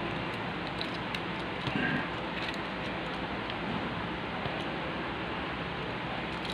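Faint clicks of the plastic parts of a Transformers Kingdom Commander Class Rodimus Prime figure being handled and shifted during transformation, heard over a steady room hiss.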